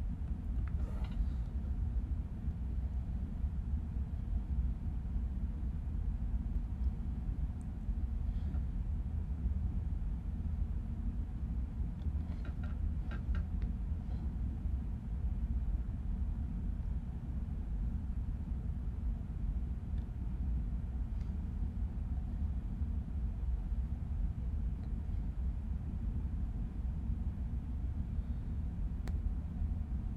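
Steady low background rumble of room noise picked up by the recording microphone, with a few faint clicks about twelve to fourteen seconds in.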